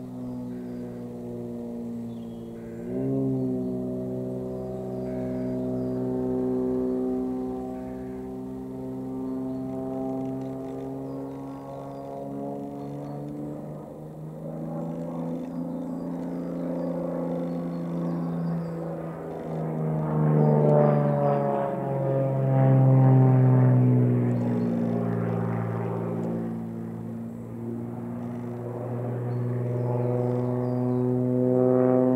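XtremeAir XA42 aerobatic monoplane's six-cylinder engine and propeller droning through aerobatic manoeuvres. The pitch rises and falls as power and airspeed change, with a sudden jump in pitch and loudness about three seconds in. It is loudest about two-thirds of the way in, with a falling glide in pitch.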